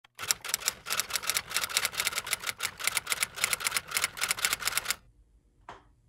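A rapid, uneven run of sharp clicks, about eight to ten a second, that stops abruptly about five seconds in; one faint click follows near the end.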